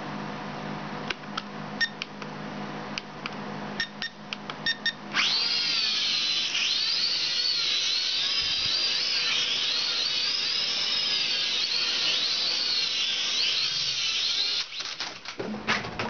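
Syma X5C-1 toy quadcopter's small electric motors and propellers whining as it takes off about five seconds in, the pitch wavering up and down as the throttle changes. A few clicks come before the takeoff. Near the end the whine cuts out, followed by a few knocks.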